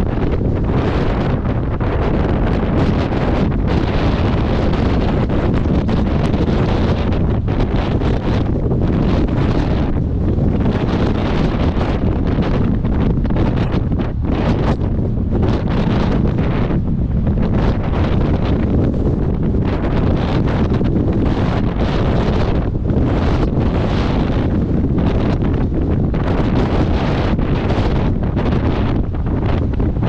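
Strong wind buffeting the microphone in loud, gusty rumbles that surge and ease every second or so, with heavy surf breaking on the rocky shore under it.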